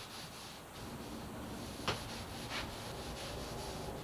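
Faint rubbing of an oil-soaked cloth wiping oil onto wooden bulkhead panelling, with a sharp click about two seconds in.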